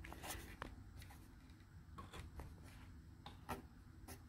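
Faint handling sounds of a TV power supply circuit board being turned and shifted by hand under a magnifying lamp: soft rubbing with a few light clicks, the sharpest near the end.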